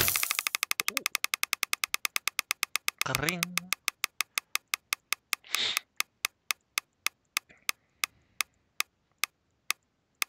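Online case-opening reel ticking as items pass the marker. The ticks come very fast at first and slow steadily to about one every half second as the reel coasts to a stop. A couple of brief louder sounds break in about three seconds and about five and a half seconds in.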